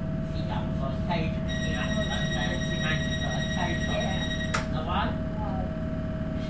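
Interior of a Tyne and Wear Metrocar standing at a station: a steady electrical hum and drone from the train with voices talking. About a second and a half in, a steady high tone sounds for about three seconds and ends with a sharp knock.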